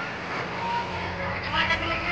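Crowd noise of a children's audience, with children's voices calling out louder near the end.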